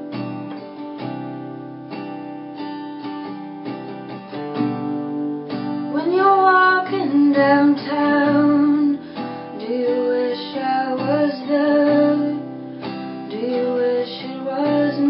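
Acoustic guitar played alone for the first few seconds. A woman's singing voice comes in about six seconds in and carries on over the guitar.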